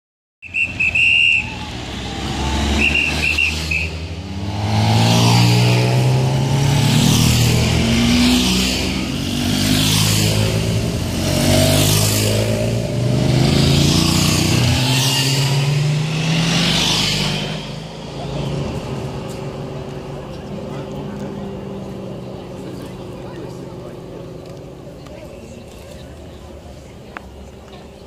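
Escort motorcycle and vehicle engines passing in convoy, their pitch rising and falling as they go by, loud for about fourteen seconds before dying away near the end. A few short high-pitched tones sound in the first few seconds.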